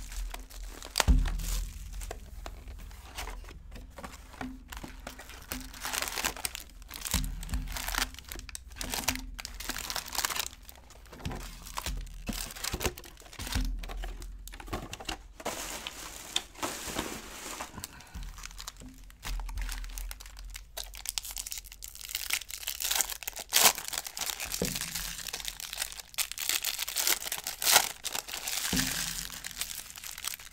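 Plastic shrink wrap and foil trading-card packs crinkling and tearing as they are ripped open by hand, an irregular crackle throughout, with a few dull thumps of the box and packs against the table.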